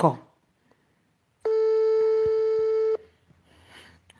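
A telephone call tone heard through a phone's loudspeaker: one steady, buzzy beep about a second and a half long that starts and stops abruptly, as a dialled call waits to connect.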